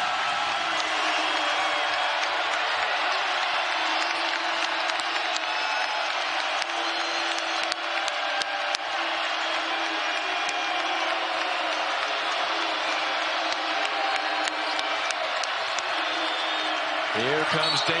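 Arena crowd noise during live college basketball play: a steady din of the crowd, with short sneaker squeaks on the hardwood and scattered sharp knocks of the ball.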